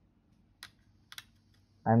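A couple of light clicks, about half a second apart, from a hand handling an HDMI cable at the TV mainboard, with near silence between them; a man starts speaking near the end.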